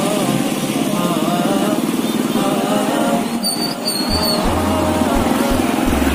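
Motor vehicle engines running on the road: a car pulling away and a motor scooter passing close by. A voice is heard singing in the background.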